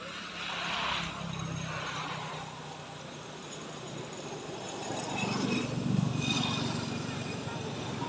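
A motor vehicle passes on the road, its engine hum swelling to a peak about six seconds in and easing off.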